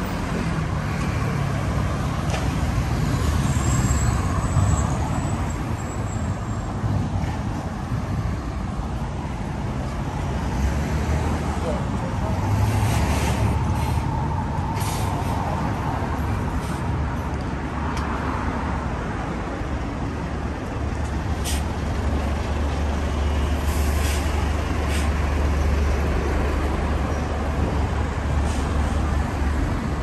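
Street traffic with a heavy vehicle's engine running in a steady low rumble, and a few short air-brake hisses.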